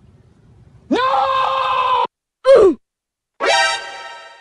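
A string of meme sound clips. First a voice is held on one pitch for about a second, then a short, loud voice sound slides down in pitch, and near the end a buzzy musical tone rings out and fades slowly.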